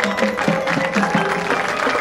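Marching band playing live: brass together with a quick run of short mallet-percussion notes from the front ensemble.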